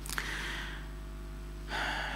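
A man's breathing: a small click and a soft breath just after the start, then a sharp intake of breath near the end, taken just before speaking.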